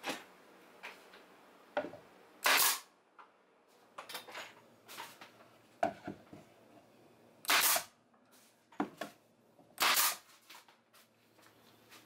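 Nail gun firing three times, driving nails to tack a plywood shelf bracket to the wall, each shot a short sharp crack. Lighter knocks of the wood being positioned come in between the shots.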